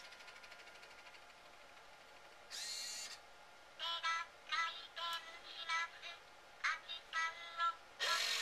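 Robocco beer-server robot's built-in speaker playing its high-pitched synthetic voice prompt in short, chirpy electronic phrases, starting about four seconds in, with a short buzzy burst from the robot a little before.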